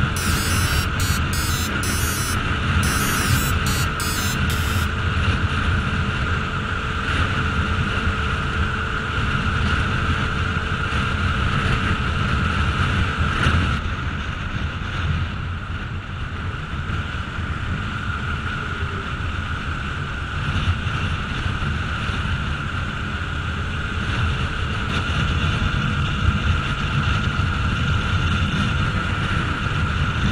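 Bajaj Pulsar RS200 motorcycle cruising at highway speed, heard as steady wind rushing over the microphone with the bike's single-cylinder engine running underneath.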